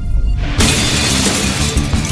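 Intro music with a glass-shattering sound effect crashing in about half a second in, laid over a low beat.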